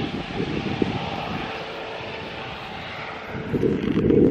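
Rescue helicopter flying away, its rotor and engine noise steadily fading. Wind buffets the microphone near the end.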